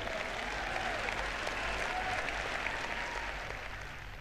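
Large audience applauding, a dense steady clapping that dies away near the end.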